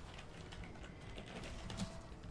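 Faint, rapid, uneven light clicking.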